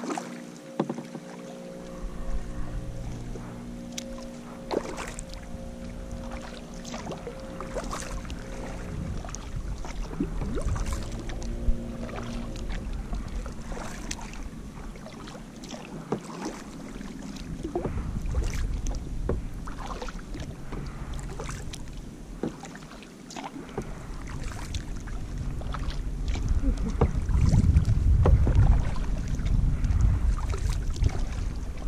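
Kayak paddle strokes: the paddle blade dipping and water splashing and dripping in repeated soft splashes, with wind rumbling on the microphone that grows louder near the end.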